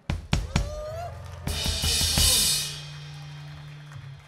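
Rock drum kit struck in a short burst between songs: several loud kick and snare hits, then a cymbal crash that rings for about a second. A low note holds under it and cuts off near the end.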